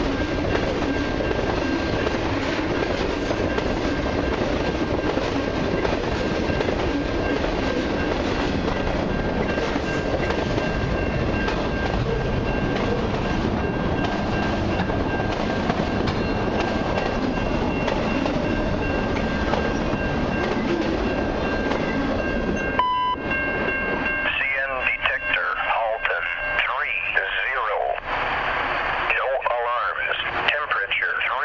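Long freight train's tank cars and autorack cars rolling past, a steady rumble of wheels on rail with a faint high whine. About 23 seconds in it gives way abruptly to a voice over a radio scanner.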